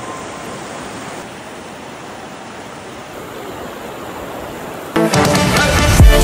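A fast-flowing rocky mountain stream rushing, a steady even noise, while background music fades out at the start. About five seconds in, loud music with a heavy bass cuts in suddenly.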